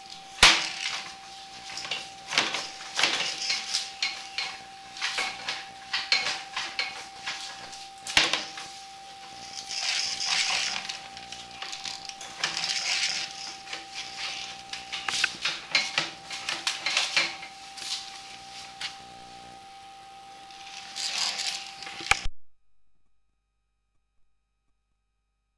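Irregular clattering and knocking as a sewer inspection camera is pushed along a building's drain line, with short rushes of hiss now and then and a steady high tone underneath. The sound cuts off abruptly near the end.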